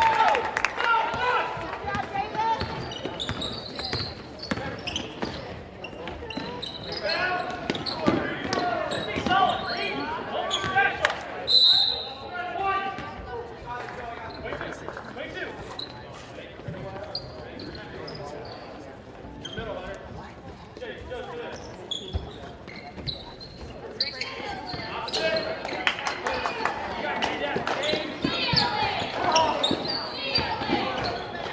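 A basketball bouncing on a hardwood gym floor during live play, its repeated sharp knocks echoing in a large hall, amid steady talk and calls from players and spectators.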